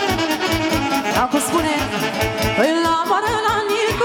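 Live wedding-band dance music led by a saxophone section, playing a fast melody over a quick, steady beat of about four thumps a second, with two upward sliding runs in the middle.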